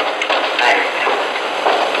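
Indistinct, overlapping voices of a gathering, with no single clear speaker, over the steady hiss of an old recording.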